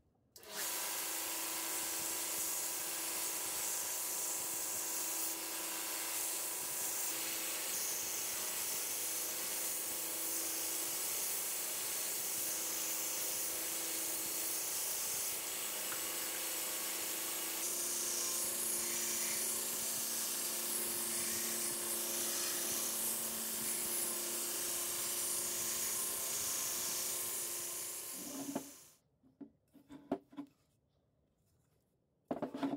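Homemade belt grinder switched on about half a second in: its electric motor hums steadily under the hiss of the abrasive belt grinding the steel of an old saw blade. The tone shifts a little about two thirds of the way through, and the grinder stops near the end, followed by a few light knocks.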